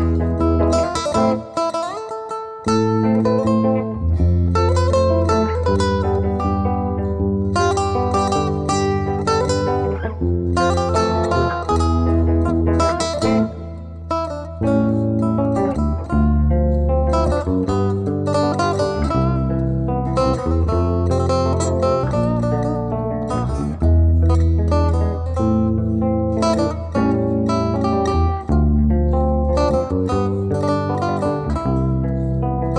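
A Persian long-necked lute and an electric bass guitar playing an instrumental duet. Quick plucked melody notes run over long, deep bass notes.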